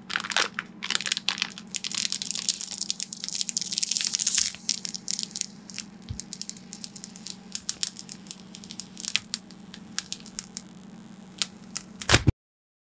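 Clear protective plastic film being peeled off a mirror-finish keyboard case panel, crackling and crinkling. The crackle is dense for the first four seconds or so, then thins to scattered crackles.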